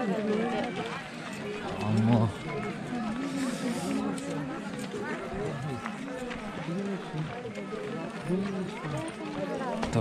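Several men's voices overlapping without a break, a group talking or chanting together while on the move.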